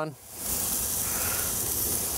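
Oil-coated scallions sizzling on a hot grill grate as they are laid down. A steady, high hiss that rises in about a third of a second in and then holds even.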